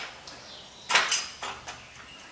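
A metallic clank about a second in, with a short ringing tail, then a lighter click: the steel hydraulic bottle jack of a motorcycle lift being turned and set into the lift's base during assembly.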